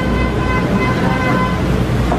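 Street traffic: a vehicle engine's steady low rumble close by, with a steady high-pitched tone over it that fades near the end.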